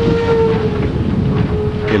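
Steam train whistle held on one steady note over the low rumble of a moving train, cutting off near the end.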